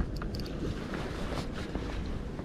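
Wind buffeting the microphone as a low, steady rumble, with a few short, sharp clicks in the first half-second.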